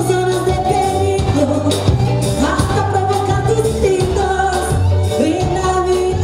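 A woman singing a pop song into a microphone over a live band of keyboard, drums and electric guitar.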